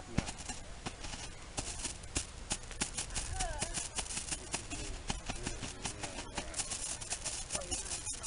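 Small ground firework burning on its side, giving off a steady, dense, irregular crackle as it spits red sparks.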